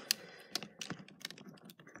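Light, irregular plastic clicks and taps from hands handling a Transformers Cybertron Red Alert figure as its parts are settled into robot mode.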